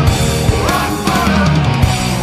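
Hard rock band playing live at full volume: distorted electric guitars and bass over a steadily hit drum kit.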